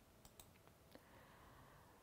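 Near silence: faint room tone with a few soft clicks in the first second.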